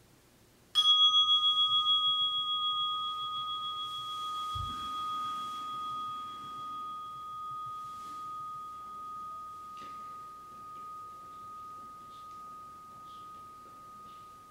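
A meditation bell struck once, ringing with a single clear tone that wavers and fades slowly, marking the end of the sitting. A soft low thump comes a few seconds after the strike.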